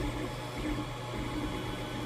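Creality Ender 3 3D printer running, a steady low hum from its motors and fans as the nozzle finishes laying down a flat layer.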